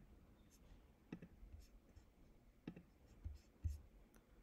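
Near silence in a small room, broken by about four faint clicks spread over the few seconds; the last two have a slight thud. They are the clicks of a computer mouse as the chat is scrolled.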